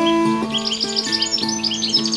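Ashbury tenor guitar, an acoustic steel-strung four-string, played fingerpicked in a slow instrumental line of sustained single notes. A small songbird sings rapid high chirps over it from about half a second in.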